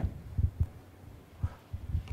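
A few soft, low thumps at uneven intervals over quiet room tone.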